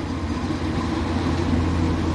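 Front loader's diesel engine running steadily, a deep, even drone.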